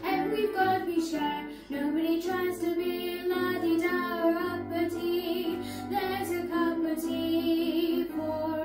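A young girl singing solo over instrumental accompaniment with a steady bass line, pausing briefly about a second and a half in before the next phrase.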